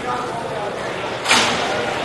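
Indoor roller hockey play: steady rink noise with one sharp crack of a hit just over a second in, echoing briefly in the hall.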